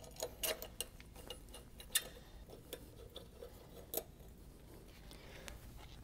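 Faint, irregular small metallic clicks and taps of bolts and metal engine parts being handled as throttle-body bolts are threaded in by hand.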